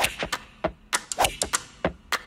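A rapid, irregular series of sharp clicks and knocks, about five a second, some with a short ringing tail, accompanying the animated title.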